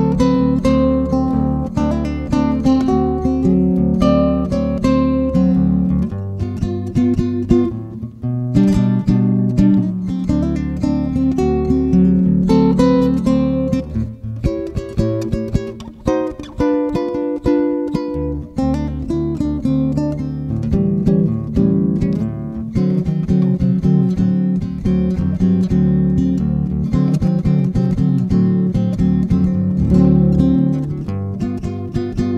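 La Mancha Perla Negra nylon-string classical guitar playing a slow fingerpicked blues instrumental in the open tuning D-A-D-F#-C-C. Sustained bass notes ring under a picked melody line.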